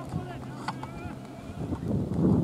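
Faint, distant voices of players calling across an open field, with a couple of small clicks. Wind buffets the microphone and grows in rumble near the end.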